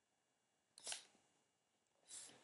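Near silence, broken once just before the middle by a brief, soft hiss.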